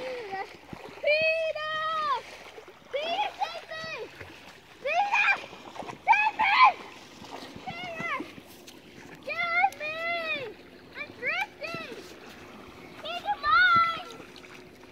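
A toddler's voice: a string of short, high babbling calls and squeals, with light splashing of small feet in shallow water at the shoreline.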